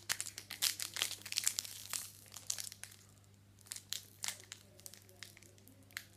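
Foil wrapper of a TeamCoach trading-card pack crinkling and crackling as it is handled, dense for the first couple of seconds, then a short lull and scattered crackles.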